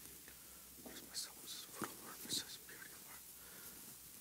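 A priest whispering a quiet prayer under his breath while purifying the chalice at the altar, with a few small knocks and rustles from handling the vessels and cloth.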